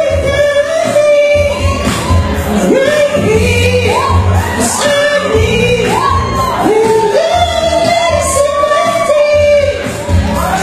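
A man singing an upbeat song live into a handheld microphone over backing music with a steady bass beat.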